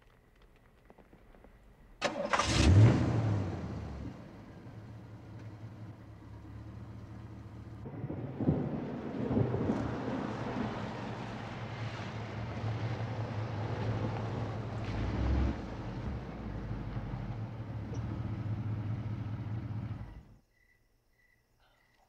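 Red Ford Mustang II's engine catching with a loud burst about two seconds in, after refusing to start, then running steadily. It gets louder from about eight seconds as the car pulls away, and the sound cuts off suddenly near the end.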